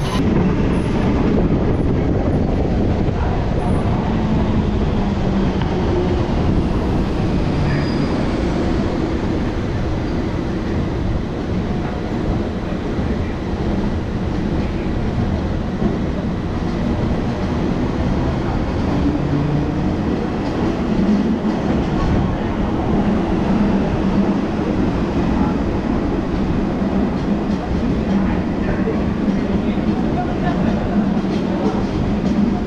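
Electric commuter train running along the track, a steady rumble of wheels and running gear on the rails heard from the train itself.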